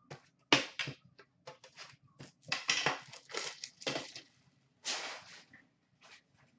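Clear plastic shrink wrap crinkling and tearing as it is stripped off an Upper Deck Series 1 hockey card tin, in a series of sharp crackling bursts. The loudest burst comes about half a second in, a dense run follows in the middle, and another burst comes near the end.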